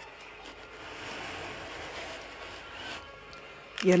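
Faint rustling and rubbing of a plastic spice packet being handled and picked up.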